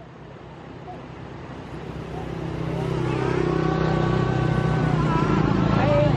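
A motor vehicle engine running with a steady low hum that grows louder over the first few seconds. Women's voices come in over it from about halfway through.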